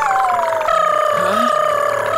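Cartoon baby cars making a noisy racket together: several long held tones sound at once and slide slightly down in pitch, with a shift about two-thirds of a second in.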